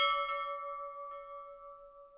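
A brass bell struck once, ringing on with a clear tone and several higher overtones that fade away with a slight wavering beat.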